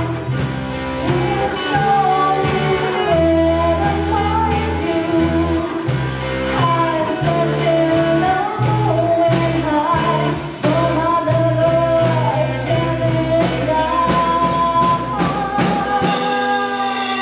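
Live rock band playing: electric guitar, bass guitar and drums under a lead melody line that bends and slides in pitch.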